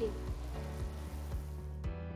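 A butter-and-flour white roux sizzling in a frying pan as it is stirred, cooking toward a paste. A background music bed with a steady bass and beat plays underneath, and the sizzling cuts off suddenly near the end.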